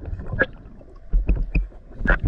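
Underwater sound at a diver's camera: a low rumble with scattered sharp clicks and knocks.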